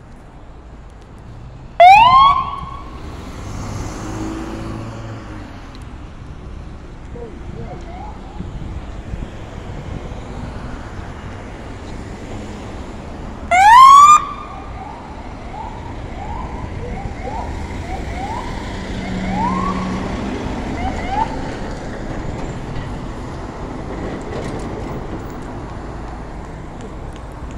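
Police siren on a California Highway Patrol escort car giving two short, loud rising whoops, about 2 seconds in and again about 13 seconds in, over traffic noise. After the second whoop comes a string of fainter rising whoops for several seconds.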